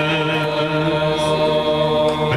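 Men's voices singing together through microphones and a loudspeaker, holding one long steady note.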